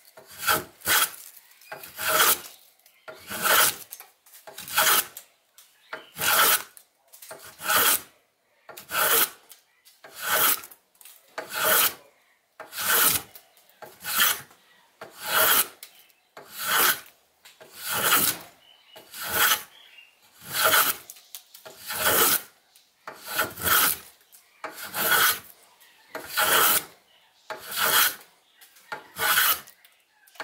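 Block plane blade rubbed back and forth by hand on fine sandpaper during sharpening: a steady rhythm of rasping strokes, about one every second and a half.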